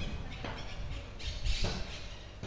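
A bird calling several times in short, harsh calls, the loudest in the second half, over a low steady street rumble.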